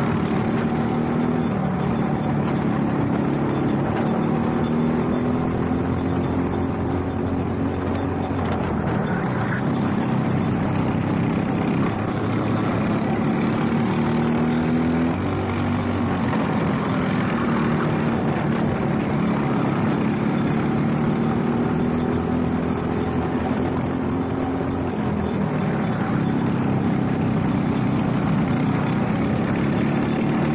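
Briggs & Stratton LO206 kart engines, four-stroke single-cylinders, running hard in a race. Their pitch drops off several times as they slow into corners and climbs again as they accelerate out.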